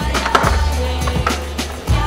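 Music with a steady bass line and drum beat, with a skateboard's wheels and trucks on concrete heard over it and one sharp crack about a third of a second in.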